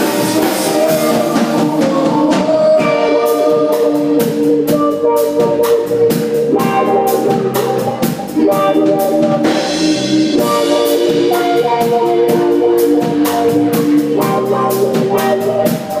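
Live band with two electric guitars and a drum kit playing, held melodic notes over a steady drum beat.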